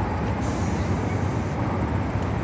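Train rumbling across a steel bridge overhead: a steady, fairly loud rumble with a hiss that rises over it about half a second in and eases off about a second later.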